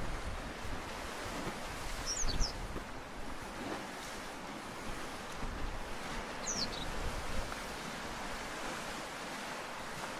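Sea washing against a rocky shore in a steady surf noise, with gusts of wind on the microphone. A bird gives two short, high, falling calls, about two seconds in and again about six and a half seconds in.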